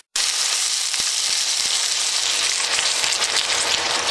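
Pork shoulder sizzling in hot oil in an enamelled Dutch oven as chicken stock is poured in: a steady, crackling hiss.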